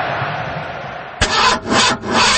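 An old car engine being cranked and not catching, as a sound effect. A steady hiss gives way, a little after a second in, to loud rasping bursts of cranking.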